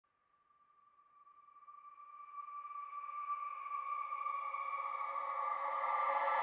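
Opening of an electronic music track: sustained synthesizer tones, a steady chord of several held pitches, fade in from silence and swell gradually with no beat yet.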